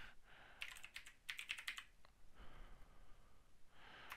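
Faint typing on a computer keyboard: a quick run of about seven keystrokes between about half a second and two seconds in, typing a search word.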